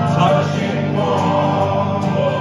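Live acoustic guitars strummed under many voices singing together, the crowd joining in with the band's singer.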